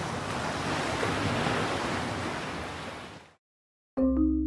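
Ocean surf, a steady rush of waves that fades out about three seconds in.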